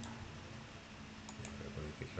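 A few soft computer mouse clicks, one near the start and several more in the second half.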